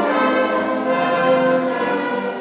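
Ceremonial band music: slow, sustained chords from an orchestral or brass-and-wind ensemble, changing every half second or so, in the manner of a national anthem played while officials stand facing the flags.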